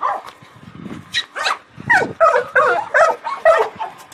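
Dog yelping and whining in a quick run of short calls, about two to three a second, starting a second in.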